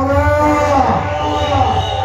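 A man's long drawn-out vocal cry over a stage PA, rising in pitch and then falling away, over a steady low hum from the sound system.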